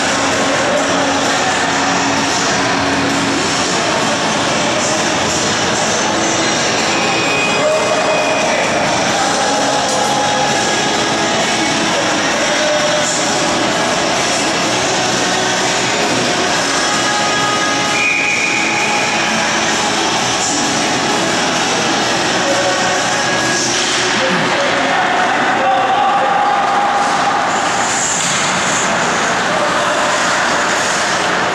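Ice hockey rink ambience: a steady, loud din of voices over a constant rumble, with a few short held tones here and there.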